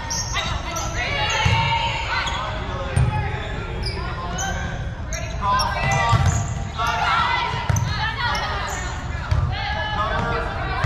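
Indoor volleyball rally on a hardwood gym court: sneakers squeaking sharply and often, the ball being struck, dull thumps about every second and a half, and spectators' voices, all echoing in the gymnasium.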